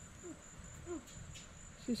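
A steady high-pitched insect trill, with two faint short low falling notes, about a third of a second in and again about a second in.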